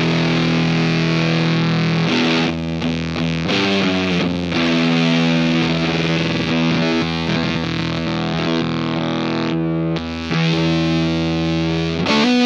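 Electric guitar played through a Redbeard Effects Honey Badger octave fuzz pedal with its octave switched on: heavy, distorted held notes. The notes change around two to four seconds in, and the sound drops out briefly near the ten-second mark while the pedal's knobs are being turned.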